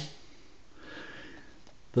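A faint, soft breath drawn in through the nose, lasting about a second, in a pause between spoken sentences.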